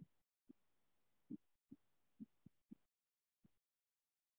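Near silence, broken by about eight very faint, short low thumps at uneven intervals.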